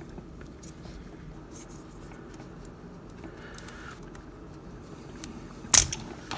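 Small hard-plastic toy parts being handled: faint rubbing and light ticks as tiny pegged-on guns are worked off a plastic action figure, then one sharp plastic click near the end.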